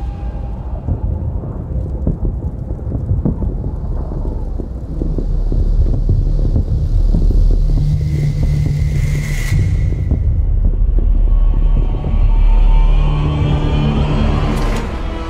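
Film sound design: a deep rumble under dense crackling, growing heavier about five seconds in. A brief swelling whoosh with a high tone comes about nine seconds in, and the rumble surges again near the end.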